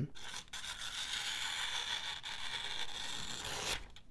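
Folding knife blade slicing through a thin phone-book page, a steady papery hiss lasting about three and a half seconds. It is an edge check after 150 sisal rope cuts: the edge still cuts, "not bad", though duller than new.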